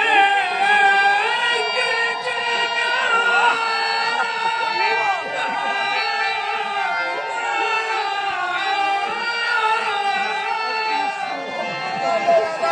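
Male voice singing a Bengali devotional kirtan over a harmonium, in long held notes that bend and slide in pitch.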